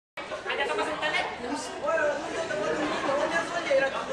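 Several people talking at once, their voices overlapping in a chatter.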